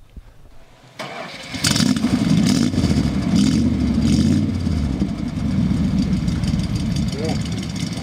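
The 1975 Dodge B100 van's engine being started: the starter cranks about a second in, the engine catches within a second, runs louder for a few seconds, then settles to a steady idle.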